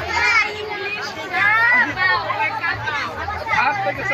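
Children's voices, high-pitched shouts and calls in play, one after another.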